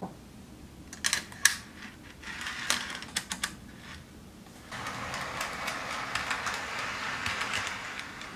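HO scale model train running on Walthers Power-Loc roadbed track: a few sharp clicks in the first three seconds or so, then a steady rattle from about halfway as the cars roll past close by.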